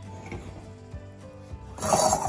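A metal ring pudding mold scraping against a steel stove grate near the end, a short, loud rasping noise.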